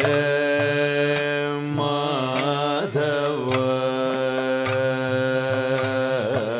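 Music: a solo voice singing a slow melody in long held notes, with short wavering turns between them.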